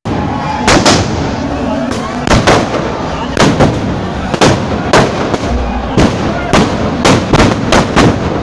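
Firecrackers packed into a burning Ravana effigy going off in a rapid, irregular string of loud bangs, about two a second, over a steady crackling noise from the fire and the fireworks.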